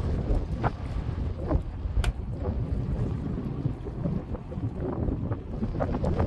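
Sea wind buffeting the microphone, a steady low rumble, with a few faint clicks, the sharpest about two seconds in.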